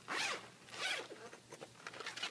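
Zipper on a fabric charging-adapter pouch being pulled open in two quick strokes.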